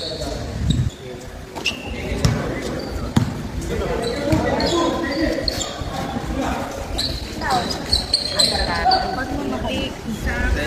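A basketball bouncing on a gym court during a game: irregular, scattered thuds, with spectators' voices chattering underneath.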